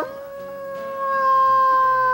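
One long wolf-like howl, held at a steady pitch and growing louder about a second in.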